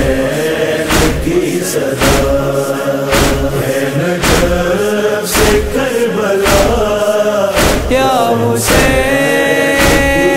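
A noha chorus of men's voices chanting a held, slow line between verses, over a steady beat striking about once a second. Near the end a steady held tone joins in.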